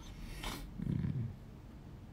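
A man's faint breath followed by a short, low, closed-mouth hum, in a thinking pause between his words.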